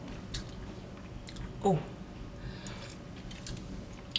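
A person quietly chewing a mouthful of potato and ham soup, with a few faint mouth clicks.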